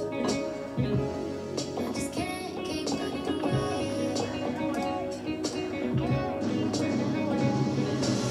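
Electronic keyboard playing R&B chords and melody notes over a held bass line.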